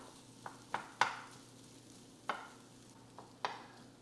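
Wooden spatula stirring and scraping leftover tofu, rice and beans reheating in a frying pan with a little oil. About five short taps and scrapes, the loudest about a second in, sound over a faint sizzle.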